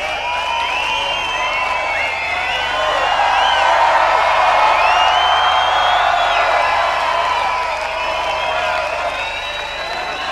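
Large festival crowd cheering, whooping and shouting with no music playing, calling the band back for an encore. The noise swells louder in the middle and then eases off.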